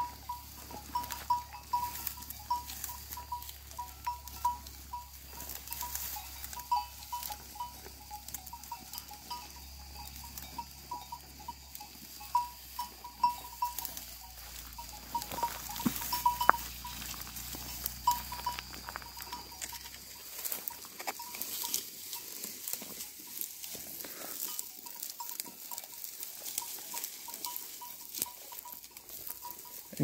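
Sheep bells clinking irregularly as a flock grazes in dry, ripe wheat, over a steady crackle and rustle of wheat stalks being pulled and chewed. The bell clinks come thick and fast at first and thin out after about twenty seconds.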